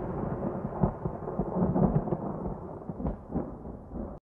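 End of a rap track fading out: an even, low, thunder-like noise with no clear beat or melody, getting quieter toward the end.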